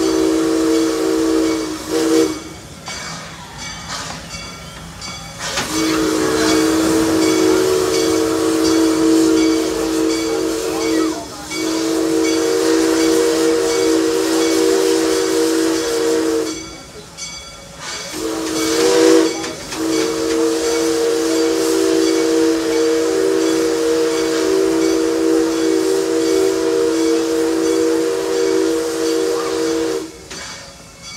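Chime steam whistle of a small propane-fired park steam locomotive, sounding a chord in long held blasts broken by a few short pauses, loudest just before the last blast, with steam hissing all the way through.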